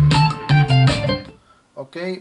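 Guitar music playing from a CD on a Sony CDP-C315 carousel CD player, heard through speakers, dropping away about two-thirds of the way through; a man begins speaking near the end.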